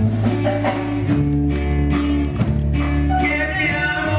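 A live church praise band playing gospel music: drum kit strokes and guitar over deep sustained bass notes, with singing coming in near the end.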